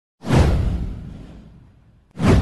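Whoosh sound effect from an intro animation: one swoosh with a deep low boom under it, starting just after the beginning and fading away over about a second and a half.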